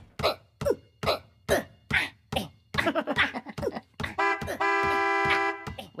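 Cartoon school bus sputtering in a run of short coughing bursts, about two a second, then giving one long honk of its horn, held for nearly two seconds near the end.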